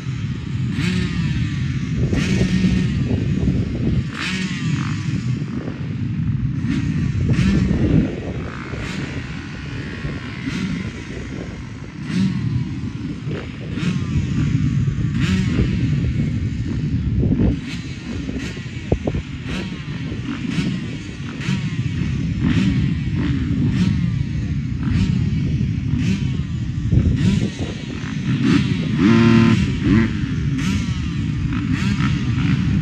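A full field of motocross bikes idling and revving at the starting gate, many engines overlapping in a dense, continuous drone, with throttles blipped up and down again and again.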